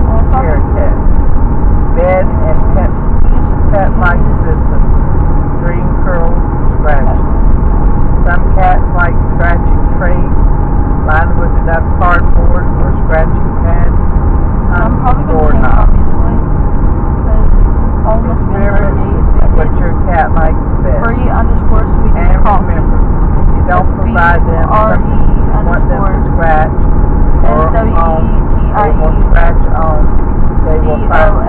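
Steady low rumble of road and engine noise inside a moving car's cabin, with voices talking over it throughout.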